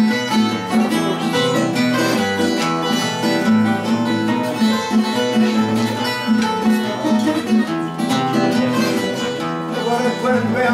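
Portuguese guitar and classical guitar playing an instrumental fado passage. The guitars pluck a steady run of notes over a continuous bass and chord accompaniment.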